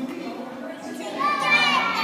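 A group of young children's voices, with one high voice calling or singing out loudly over them in the second half.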